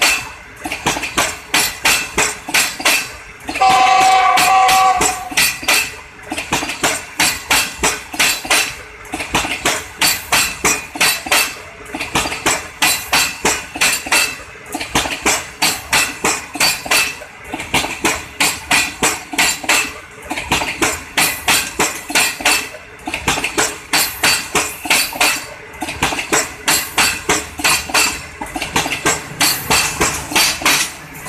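Passenger coaches rolling slowly past, their wheels clacking over the rail joints in quick clusters that repeat about every three seconds as each coach goes by. A brief squeal sounds about four seconds in.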